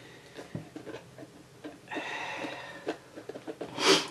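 Old Kodak box camera being worked open by hand: small clicks and knocks as it is handled, and a grating scrape lasting under a second partway through as the rusted-on metal part shifts.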